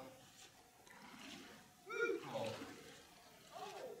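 Faint splashing and sloshing of feet wading through shallow, muddy standing water, with brief bits of voice about two seconds in and again near the end.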